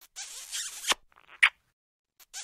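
Cartoon kissing sound effect playing on a loop: a drawn-out wet smooch that ends in a sharp pop, a short smack, then another drawn-out smooch and pop starting near the end.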